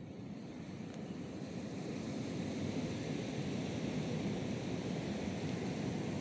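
Steady rushing of sea surf, growing a little louder over the first two seconds and then holding even.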